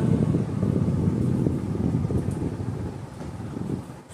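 Low, uneven rumble of air buffeting the microphone, with no speech over it.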